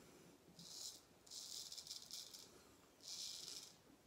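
Wade & Butcher 5/8 full hollow straight razor scraping through lathered stubble on the cheek and jaw: three short, faint rasping strokes, the middle one the longest.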